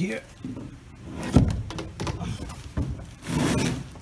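A 1-inch PVC pipe outrigger knocking and rubbing against the hard plastic kayak as it is pushed into a hole in the deck. There is one sharp knock about a second and a half in, and a scraping rub near the end.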